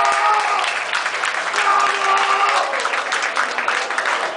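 Audience applauding, many hands clapping at once, with voices calling out in the crowd.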